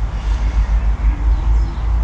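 Low, fluctuating outdoor rumble with little above it, typical of wind on the microphone or distant traffic; no distinct sound from the work in hand.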